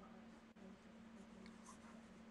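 Near silence: faint pencil strokes scratching on sketchpad paper over a low steady hum.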